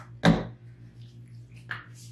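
A plastic lotion bottle set down on a countertop: one sharp knock about a quarter of a second in, then a brief soft rub near the end.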